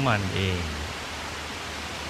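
Steady, even hiss of rain falling, with a man's voice ending a word at the start.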